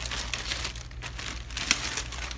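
Plastic packaging crinkling as it is handled, an irregular crackle, with one sharp click about three-quarters of the way through.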